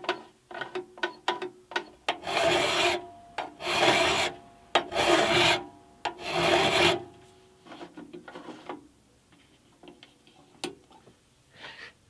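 Hand file rasping on a metal edge of the bandsaw's upper blade guide assembly, taking a tiny amount off. A run of short, quick strokes comes first, then four long strokes with a faint ringing tone, then light scrapes and taps.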